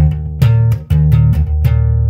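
Bass guitar played with the thumb in the double-thumb thumping technique: about seven quick, sharp notes, with the low tones ringing on between the strikes.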